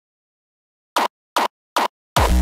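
Three short electronic drum hits in a hardstyle arrangement, played back at the track's tempo about 0.4 s apart. Each hit is a quick downward pitch sweep with the deep low end cut away.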